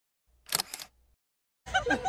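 Camera shutter click: one quick double click about half a second in, on an otherwise silent track. Near the end, live outdoor sound with a voice comes in.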